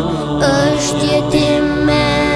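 Albanian ilahi (Islamic devotional song): a voice sings a melody over a steady low backing drone.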